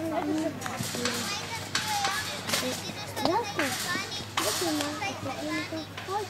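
Young children shouting and calling to each other while playing football, with several short rushes of noise among the voices.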